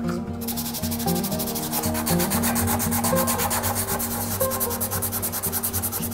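Sandpaper rubbed by hand over a small wooden lighter case, in rapid, even back-and-forth strokes that start a moment in.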